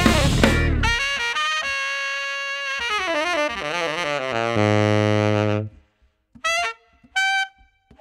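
A jazz band with drum kit stops about a second in, and a saxophone plays an unaccompanied break: a run of quick notes bending up and down, ending in a long low note. After a brief silence come two short notes.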